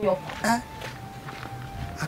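A man's voice speaking in short bursts near the start, then a pause with a faint steady background-music tone.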